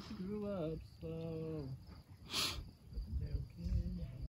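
A person's voice making long wordless held notes, each dropping in pitch at its end, followed by a short hiss about two and a half seconds in and softer low vocal sounds near the end.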